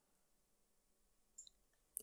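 Near silence in a pause between spoken phrases, with a faint click about one and a half seconds in.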